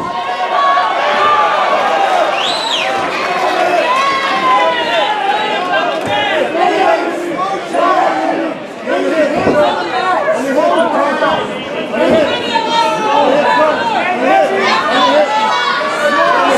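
Fight crowd shouting and cheering, many voices yelling over one another.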